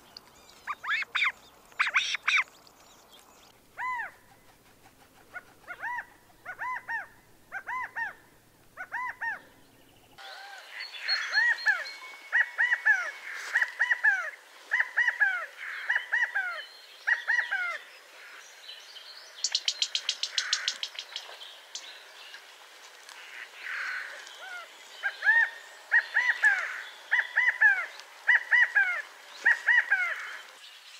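Newly hatched quail chicks peeping: runs of short, high, downward-sliding peeps, a few per second, getting louder and more crowded about a third of the way through.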